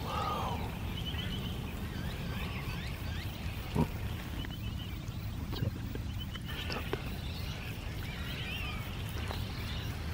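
Bird chirps and short high trills come and go over a steady low rumble, with a sharp knock about four seconds in.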